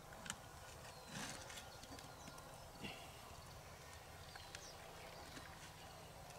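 A few sharp, irregular clicks of a knife blade against a freshwater mussel's shell as it is pried open, faint over a low background hiss.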